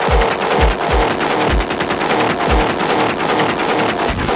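Electronic music: deep kick drums that drop in pitch at an uneven rhythm, under a fast, dense rattle of sharp percussive clicks.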